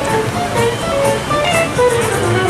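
Music with a plucked guitar picking out a melody in short separate notes.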